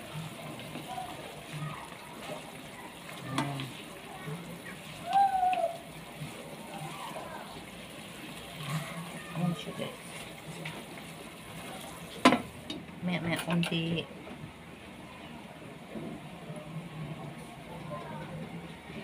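Pork steak simmering in a little sauce in a pot, sizzling steadily while a plastic spoon stirs it. About twelve seconds in, a sharp clack and a brief rattle as the glass lid is set on the pot, after which the sizzling sounds duller.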